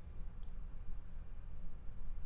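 A single computer mouse click about half a second in, over a faint low hum.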